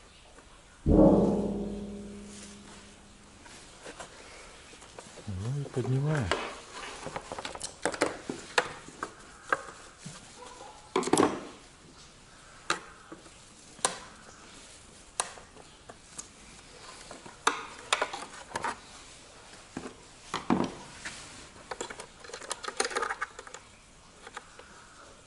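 Hands working on a disassembled car door mirror. A loud ringing clank comes about a second in, then scattered sharp clicks and taps from the plastic mirror housing and small hand tools as its clips are worked loose.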